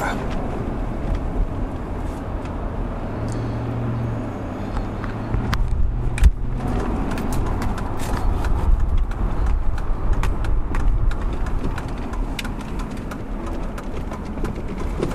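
Steady road and engine noise heard inside a moving car's cabin, with a low steady hum for a few seconds in the middle and a single sharp knock about six seconds in.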